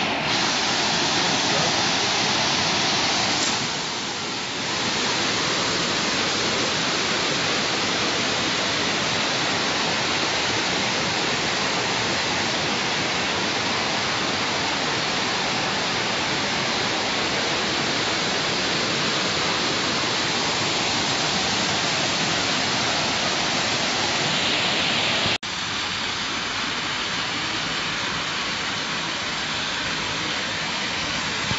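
Steady rushing of white water pouring over low stone river weirs. About 25 seconds in it cuts suddenly to a thinner, higher hiss of water, the splashing of a fountain's jets.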